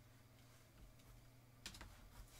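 Near silence with a faint hum, then a short run of faint sharp clicks near the end.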